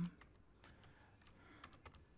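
Faint keystrokes on a computer keyboard: a handful of separate, irregularly spaced key presses as digits are typed.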